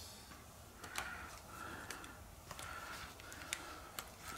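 Faint handling sounds of plastic eyeglass frames being picked up and put on, with a few light clicks and soft rustling.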